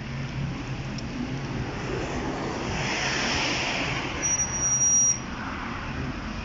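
Road traffic: a car passes, its noise swelling and fading over a few seconds, under a steady low hum. A brief high-pitched squeal sounds near the end.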